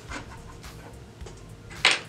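A quick, sharp intake of breath near the end, taken just before speaking, after a stretch of quiet room tone.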